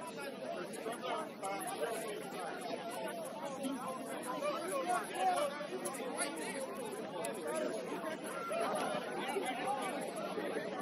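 Indistinct chatter of many people talking at once, overlapping voices with no single clear speaker.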